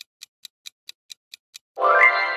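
Countdown-timer sound effect ticking evenly, about four to five ticks a second, stopping about a second and a half in. Near the end a bright chime rings out and slowly fades, marking the reveal of the correct answer.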